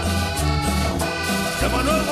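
Live cumbia band playing an instrumental passage: accordion over a bass line in even, bouncing notes, with congas and a metal güira scraper keeping the rhythm.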